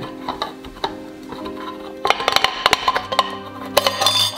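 Background music with held notes throughout; in the second half a hand-crank can opener cuts around a steel can lid in a rapid run of clicks.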